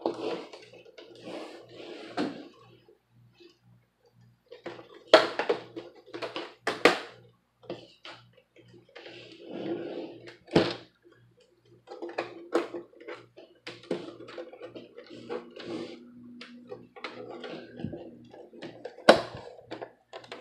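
Plastic back cover of an HP Pavilion 20 all-in-one being pressed on by hand, giving scattered sharp clicks and knocks as its hooks snap into the case, over faint handling rustle.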